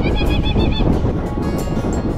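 A steady, loud, low rumble of a dog-drawn sled running over packed snow, with wind on the microphone, under background music. A short, high, wavering whine sounds in the first second.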